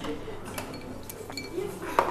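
Glasses and crockery clinking at a bar counter, a few separate clinks, over faint voices in the background.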